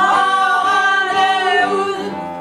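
Women singing a cabaret song, their voices holding one long note together that starts sharply at the beginning and eases off near the end.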